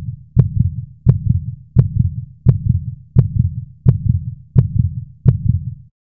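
Heartbeat sound effect: a steady lub-dub at about 85 beats a minute, each beat opening with a sharp click over a low double thud, stopping just before the end.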